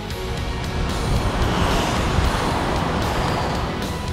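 A natural-gas semi-truck passes by: a whoosh of engine and tyre noise swells about a second in and fades near the end, over background music.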